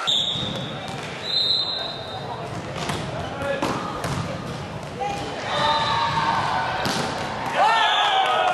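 A referee's whistle blown twice in the first two seconds, a short blast and then a longer one, followed by a few sharp volleyball hits echoing in a gym hall, with voices calling out around them.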